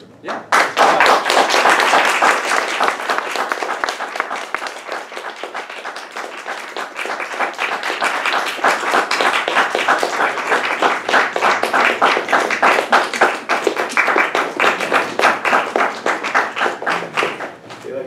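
Lecture audience applauding at the close of the course. The clapping starts about half a second in, is loudest in the first couple of seconds and then carries on steadily until near the end.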